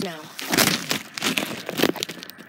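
A spoken "now" at the start, then three or four short bursts of rustling, crinkly noise from a hand-held phone being handled and rubbed against its microphone.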